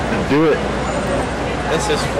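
Steady low rumble of city street traffic, with a short rise-and-fall vocal sound from a nearby person about half a second in.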